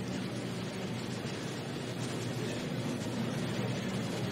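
Steady rushing noise with a faint low hum underneath, even throughout, with no distinct events.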